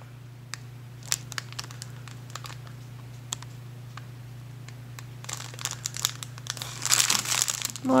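Clear plastic sleeve of bagged diamond-painting drills crinkling as it is handled and turned: scattered light crackles, then denser crinkling from about five seconds in, over a low steady hum.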